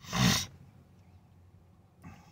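A man lets out one heavy, breathy exhale with a low groan of voice in it, about half a second long: a weary sigh.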